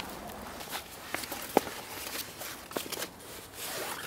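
Canvas rucksack being unpacked: fabric rustling and scattered light clicks and knocks from its straps and buckles, with one sharp click about one and a half seconds in.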